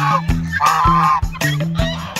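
Chinese goose honking twice, short loud nasal honks, over background music with a steady beat.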